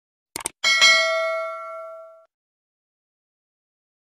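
Subscribe-button sound effect: two quick mouse clicks, then a bright notification-bell ding that rings and fades out over about a second and a half.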